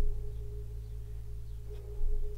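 Soft ambient background music: sustained low, resonant notes with a steady higher tone held over them, a new low note coming in at the start and again at the end.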